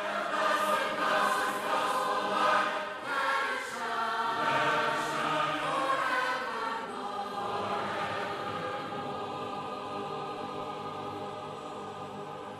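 A choir singing in sustained chords, the sound growing slowly quieter through the second half.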